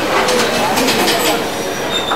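Metre-gauge passenger coaches rolling slowly past a station platform as the train comes in. There are a run of rattling clicks from the wheels about half a second in and a brief high squeal near the end.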